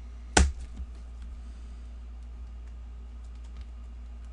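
A single sharp knock about half a second in, followed by a few faint clicks like keyboard or mouse taps, over a steady low electrical hum.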